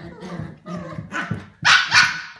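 Small dogs growling and barking at each other in a scuffle, with a loud, high-pitched bark near the end.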